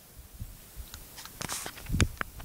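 Light handling noise: scattered small clicks and a brief rustle about a second and a half in, then a few soft knocks.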